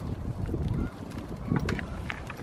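Low rumbling buffets on the microphone in two spells, with a few crisp crunches of a goat chewing food close by.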